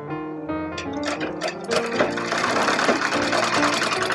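Sewing machine stitching cloth: a few separate clicks about a second in, then running fast and steady. Piano background music plays throughout.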